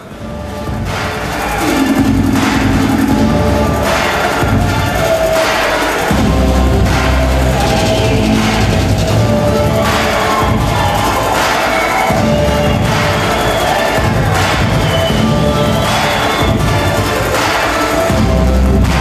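Background music with a steady beat and heavy bass, swelling up over the first two seconds.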